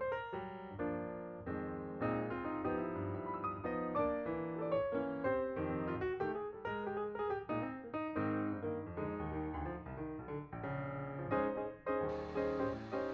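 Background piano music, a steady run of notes with no break.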